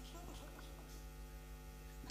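Steady low electrical mains hum through the microphone and PA sound system, with a faint even background hiss.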